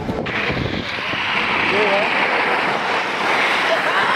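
Steady rushing noise of longboard wheels rolling fast on asphalt, with wind on the microphone, swelling slightly after the first second.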